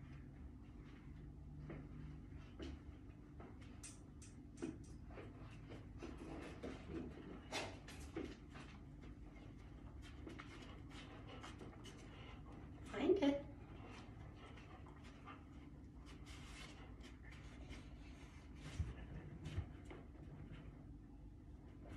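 A dog wearing an inflatable cone collar moving about a room with wooden floors, making scattered light clicks and taps, with one louder, brief sound about two-thirds of the way through.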